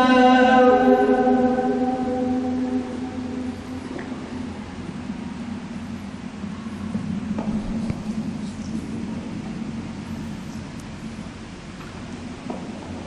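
A held, pitched chant or music tone fades out over the first two or three seconds. It leaves the steady hum and hiss of a large hall with electric fans running, and a few faint clicks.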